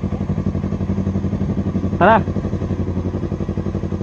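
Yamaha YZF-R3's parallel-twin engine idling steadily at a standstill, an even low pulsing throb.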